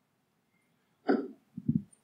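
A short, sudden bump about a second in, then two low thuds close together, as a handheld microphone is picked up and handled.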